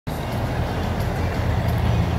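A steady low vehicle rumble with outdoor traffic noise, even throughout.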